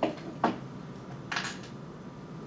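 Jewellery pliers and a metal bead chain being handled on a wooden board: two sharp clicks near the start, then a brief light metallic clinking about one and a half seconds in.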